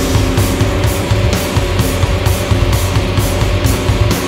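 Rock band playing an instrumental passage on electric guitar, bass guitar and drum kit, with loud, steady cymbal and drum hits about three times a second.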